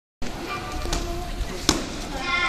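Gloved punches landing on hand-held focus mitts in a kickboxing pad drill: a few sharp smacks, the loudest about a second and a half in.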